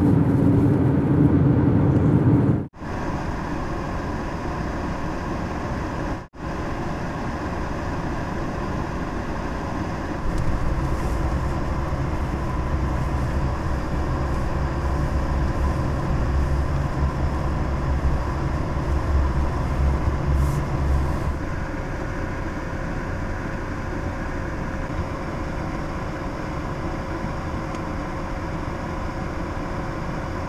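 Steady road and engine noise heard inside a moving car, a low rumble under tyre hiss, heavier for a stretch in the middle. The sound cuts out briefly twice, about three and six seconds in.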